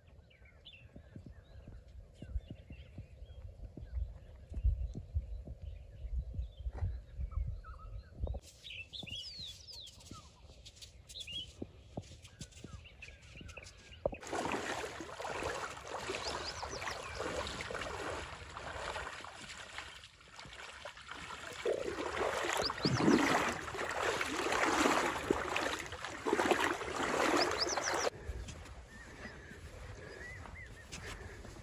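Feet wading and splashing through a shallow river, loud and continuous through the second half. Before it, a low wind rumble on the microphone and a few short bird calls.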